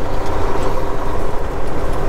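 Semi truck's diesel engine running at low speed, heard from inside the cab as a steady rumble.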